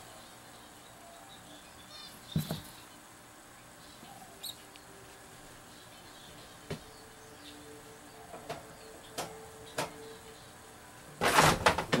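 A mouse scurrying over loose substrate in a plastic tub: faint, scattered scratches and light clicks over quiet room tone.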